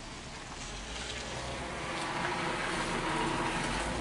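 A passing road vehicle, its noise growing steadily louder.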